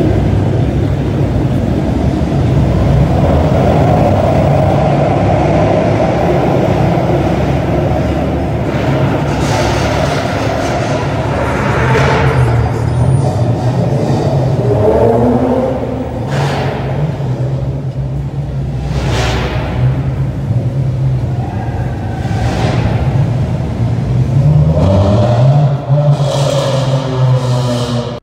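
Several car engines running and revving in a concrete parking garage, with a steady low engine rumble throughout. Two rising revs stand out, one about halfway through and one near the end, and short rushing sweeps come in between.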